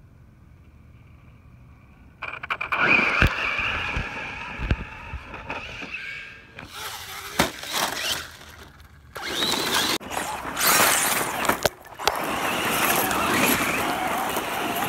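Traxxas short-course RC truck driving hard on loose dirt: a high-pitched motor whine, tyres spraying dirt and gravel, and several sharp knocks as it tips and tumbles. The whine starts about two seconds in, and the later part is mostly dirt-scrabbling noise.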